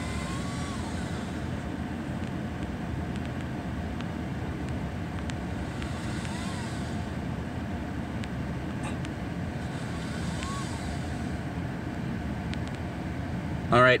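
Steady low rumble of a pickup truck idling, heard from inside its cab while it sits stopped. A few faint, brief high chirps come through over it.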